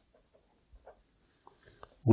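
Faint scratching of a pen writing on paper: a few short strokes, beginning a little before halfway through.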